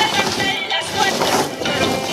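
Dried sprouted maize (guiñapo) rustling and shifting as a hand stirs and spreads it on a drying tarp, under background music.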